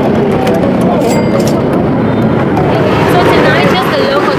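Busy street traffic: motorbikes and scooters running and passing, a steady loud din, with people's voices over it.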